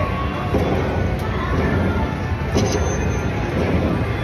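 Ultimate Fire Link slot machine playing its bonus-collect music, with short chimes as the credit meter counts up the fireball prizes, over a steady casino background rumble.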